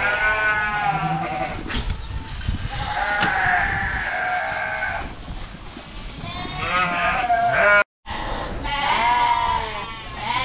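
A flock of sheep bleating, several overlapping calls one after another, one of them long and drawn out. The sound drops out for a moment about eight seconds in.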